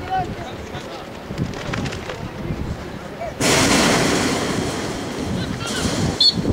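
Wind buffeting the microphone: faint outdoor voices, then a sudden loud rush of noise about three seconds in that eases off over the next two seconds.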